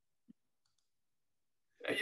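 Near silence on a video call, broken only by one faint, very short blip about a third of a second in; a man starts speaking just before the end.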